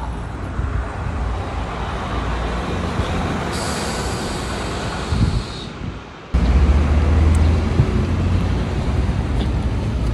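Street noise with a steady rush of road traffic and a hiss for about two seconds in the middle. About six seconds in it cuts abruptly to a louder, deep rumble.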